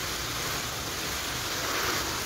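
Water spraying from a pistol-grip garden hose nozzle onto leafy plants: a steady hiss of spray hitting the foliage.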